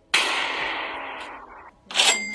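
A single gunshot sound effect: a sudden loud crack with a noisy tail that fades away over about a second and a half.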